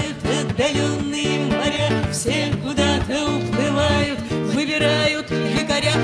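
An acoustic guitar plays a steady rhythmic accompaniment while a group of voices sings a song together.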